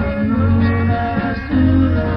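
A 1960s beat group playing live: guitar chords over held bass-guitar notes, with no singing.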